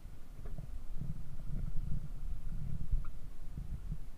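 Low, uneven rumble of wind and water on a small outrigger fishing boat at sea, with a few faint knocks.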